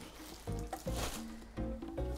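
Plastic protective wrap on a seat cushion crinkling as the cushion is lifted off the seat, over quiet background music.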